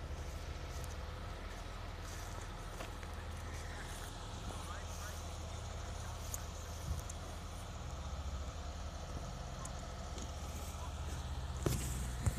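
Diesel engine running steadily at a concrete pour, a constant low rumble typical of a concrete pump truck's engine driving the pump, with a brief knock about seven seconds in.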